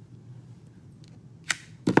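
A light click about one and a half seconds in, then a louder knock near the end: a clear acrylic stamp block set down on a hard craft desk.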